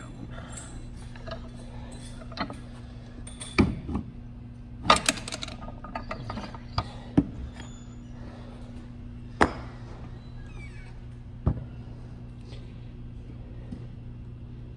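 Steel press tooling and a Onewheel motor part clinking and knocking on a hand arbor press as a worn bearing is pressed out, about seven sharp metallic knocks, the loudest about five seconds in and again just past nine seconds. A steady low hum runs underneath.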